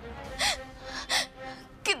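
A woman crying: two short sobbing gasps of breath, about half a second and a second in, over soft held background music, with a word of speech at the very end.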